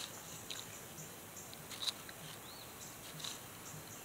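Faint clicks and light scrapes of a metal fork picking through food in an open aluminum-foil pouch, a few soft ticks spread across the seconds.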